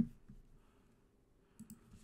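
One sharp click at a computer, as at the end of typing a search, followed by near silence with a few faint clicks near the end.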